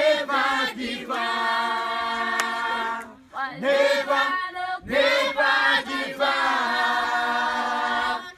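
A group of voices singing unaccompanied, a cappella, in harmony: short sung phrases, twice ending in a long held chord.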